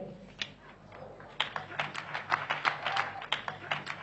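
A quick, irregular run of sharp taps and clicks over a steady low hum. The taps start sparsely and come thicker from about a second and a half in, at roughly four or five a second.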